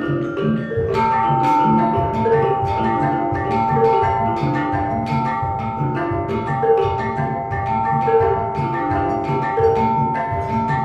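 Gamelan ensemble playing: bronze metallophones struck with mallets in a steady repeating pattern over low ringing notes. About a second in, a high held ringing note enters and sustains over the pattern.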